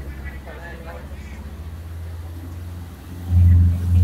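Low rumble of a motor vehicle engine running close by, swelling much louder for about a second near the end.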